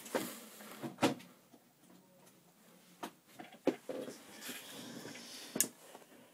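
Handling knocks and clicks as a light is plugged in and switched on, a few sharp clicks spread out with faint fumbling between them and the loudest click near the end, as the light comes on.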